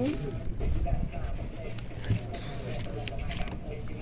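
Indistinct voices in the background, with rustling and handling knocks close to the microphone as vegetables are packed into a bag.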